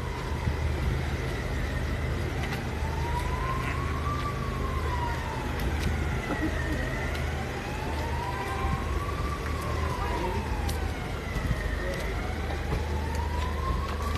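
An emergency-vehicle siren wailing, its pitch slowly rising and falling about every five seconds, heard over a steady low hum of street traffic.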